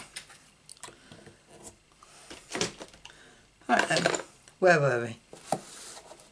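Card boxes being handled and set down on a craft mat: soft rustling with a few light taps. A voice is heard briefly twice, a little past the middle.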